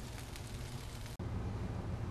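Faint, steady outdoor background rumble with no distinct event, changing abruptly at an edit cut about a second in.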